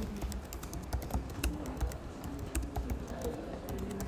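Typing on a computer keyboard: a run of irregular, closely spaced keystrokes.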